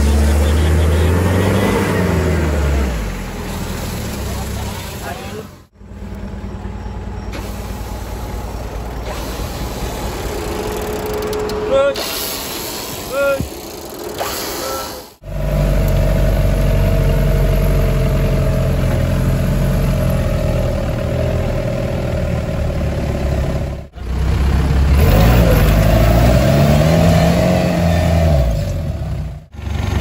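Off-road 4x4's engine working on a steep trail. It revs up and back down near the start and again near the end, with steady running between. The sound breaks off abruptly a few times.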